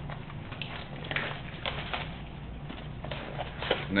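Fingers picking at and tearing the plastic shrink wrap off a sealed baseball card box: faint, scattered crinkles and scratches over a low steady hum.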